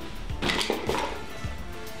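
Background music, with a few light clinks and knocks about half a second to a second in.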